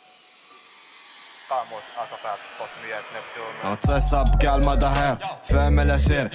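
Moroccan trap song playing: a fading piano tail, then a rapped vocal enters about a second and a half in, and the beat drops with heavy deep bass near four seconds in as the rapping goes on louder.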